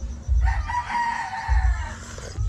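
A rooster crowing once: one drawn-out call of about a second and a half, starting about half a second in.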